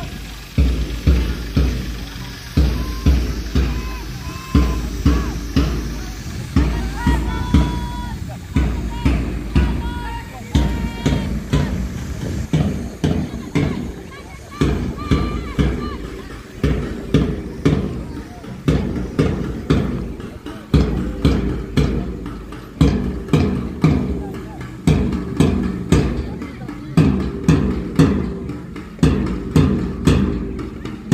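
Music with a drum beating a steady rhythm, about a stroke a second, and a wavering melody above it through the first half.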